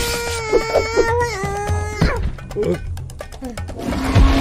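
A cartoon character's long, held scream over background music. The scream dips slightly in pitch partway through and cuts off about halfway.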